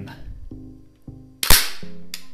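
A single sharp metallic clack from a CZ 247 submachine gun's action about one and a half seconds in, the bolt slamming forward as the gun is worked unloaded. Soft background music plays underneath.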